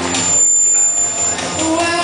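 A young boy singing a pop song into a microphone; the voice drops out for about a second in the middle and comes back near the end. A thin, high, steady tone sounds through the break in the singing.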